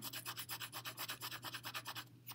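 Colored pencil shading back and forth on a paper worksheet: quick, even scratchy strokes, several a second, stopping at the end.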